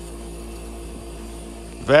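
Steam-driven Tesla turbine spinning steadily under vacuum, geared to two generators, giving a constant hum. A man's voice starts right at the end.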